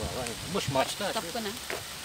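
Indistinct voices talking over a steady hiss of background noise.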